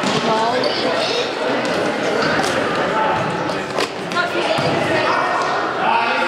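Children's voices shouting and calling in a reverberant sports hall during an indoor football match, with a few sharp thuds of the ball being kicked on the hard court.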